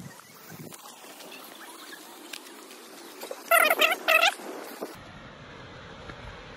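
Two short, loud, wavering animal calls in quick succession about three and a half seconds in, over a steady outdoor hiss.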